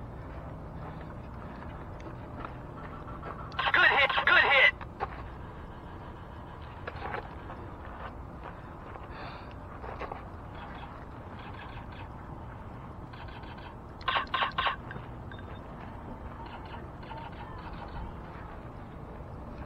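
Laser tag guns firing their electronic shot sounds in bursts. There is a loud burst of about a second around four seconds in, fainter blips after it, and a rapid run of four shots about fourteen seconds in.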